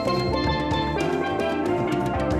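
Live band music led by a handpan struck with the hands, its ringing tones over drums and percussion keeping a steady beat.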